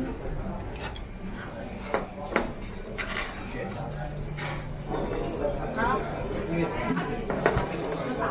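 Metal chopsticks clinking against ceramic bowls and plates at a hot pot table, a few sharp clinks about two to three seconds in and again near the end, over restaurant chatter.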